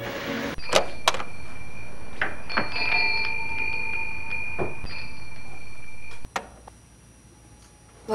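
A glass shop door being pushed open by its metal push bar, with two sharp clacks from the bar and latch, then a few more knocks over a steady high ringing tone. It all cuts off suddenly about six seconds in.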